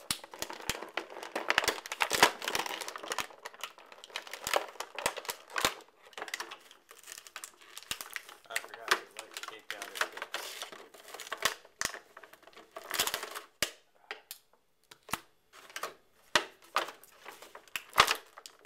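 Clear plastic toy packaging tray and plastic wrapping crinkling and crackling as hands work an action figure free. It comes in uneven spells of crinkles and sharp clicks, with short pauses between.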